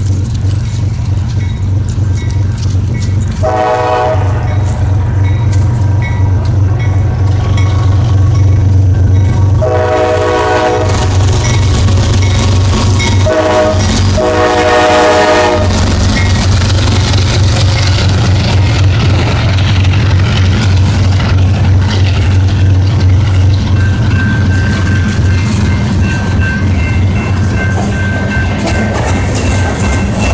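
CSX diesel freight locomotives passing a grade crossing, engines running with a steady low rumble while the horn blows the crossing signal: two long blasts, a short one and a long one. A crossing bell dings evenly in the first part, and the covered hopper cars then roll past, their wheels rattling on the rails.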